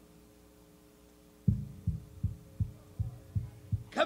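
A low, evenly spaced thumping beat, about two to three thumps a second, begins about a second and a half in over a faint steady hum.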